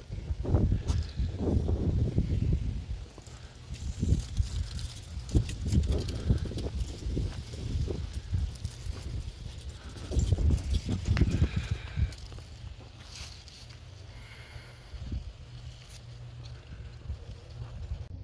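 Irregular footsteps on asphalt with wind buffeting the microphone, loudest in the first twelve seconds. After that, a low steady hum continues underneath.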